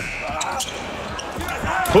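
A basketball bouncing on the court during live play, with a few sharp knocks over steady arena crowd noise.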